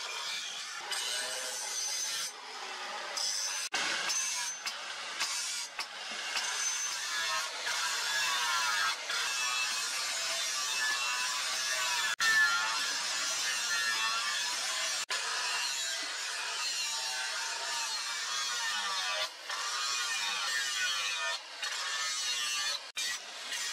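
Angle grinder with an abrasive disc grinding the edge of a leaf-spring steel machete blade, its whine wavering up and down as the disc is pressed and moved along the steel. The sound breaks off abruptly for an instant a few times.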